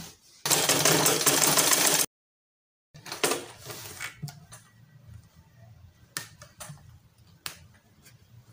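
A short burst of loud rustling, then dead silence from an edit cut, then quiet handling with a few sharp clicks as white satin is positioned at a Butterfly sewing machine.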